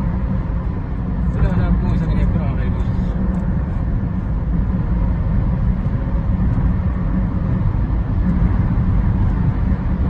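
Steady low engine and tyre rumble heard from inside a moving car's cabin.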